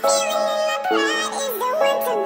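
A song playing: a sung vocal melody with wavering, sliding notes over held chords.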